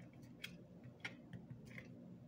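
Faint handling sounds of satin ribbon being pulled tight into a knot around a headband: a few soft ticks and rustles.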